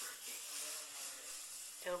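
Aerosol hairspray being sprayed over hair set in foam rollers: a long, steady hiss that stops near the end.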